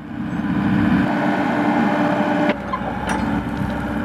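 Tracked hydraulic excavator's engine running steadily, its sound changing abruptly and dropping slightly about two and a half seconds in.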